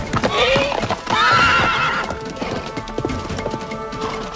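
A galloping horse, its hoofbeats pounding, whinnies in the first half: a short rising call, then a longer wavering one. Background music runs underneath.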